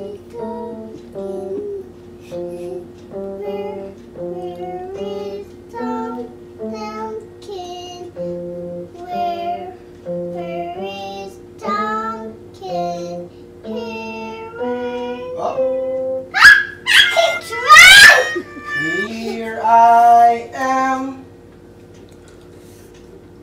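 Small electronic keyboard played slowly, one note at a time, picking out a melody, with a child's voice singing along. About three-quarters of the way through come a few much louder swooping sounds that rise and fall in pitch.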